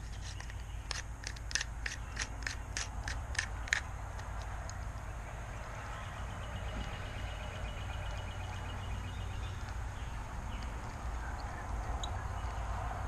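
Small Daiwa fishing reel being worked by hand after cleaning and reassembly: a run of sharp clicks, about three a second, for the first few seconds, then a faint fast ticking from its mechanism as the handle is turned. It is running freely.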